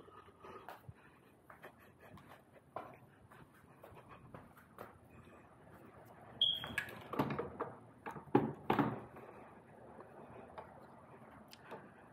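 Hands handling metal parts while fitting a motor into an electric dirt bike: scattered light clicks and knocks, with a cluster of louder knocks in the second half and a short squeak a little past halfway.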